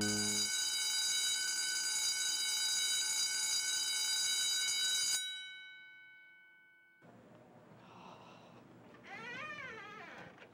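A bell rings steadily for about five seconds with a high, dense ringing tone, then stops abruptly and its ring dies away over the next two seconds. Faint room noise and distant voices follow near the end.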